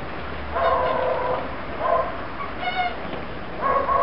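Puppies whining in play: a long high whine about half a second in, then shorter cries near two seconds, just under three seconds, and at the end.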